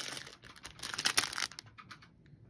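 Clear plastic packaging sleeves crinkling and crackling as they are handled: a short burst at the start and a longer run of rapid crackles from just under a second in to about a second and a half.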